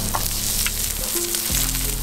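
Salmon and steaks sizzling on a hot stone slab and grill grate over charcoal embers: a steady hiss with small crackles.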